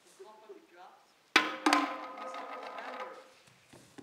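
A bowl dropped onto a wooden stage floor: a sharp clatter with a second bounce just after, then ringing tones that die away over about two seconds.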